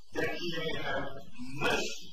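A man speaking in a lecture, heard as muffled, distorted speech with a hiss over it, too garbled for the words to be made out.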